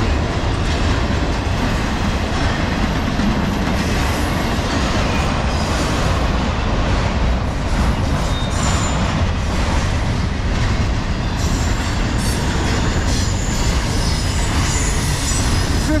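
Norfolk Southern intermodal freight cars, double-stack container wells and trailer flats, rolling past at about 50 mph: a loud, steady rumble of steel wheels on rail with clickety-clack from the rail joints. Faint high-pitched wheel squeals come and go in the second half.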